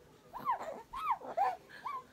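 A young baby makes about four short, high-pitched squeals in quick succession, each rising and then falling in pitch.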